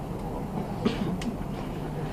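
Steady low background rumble with two short clicks a little after the middle, the first one the loudest.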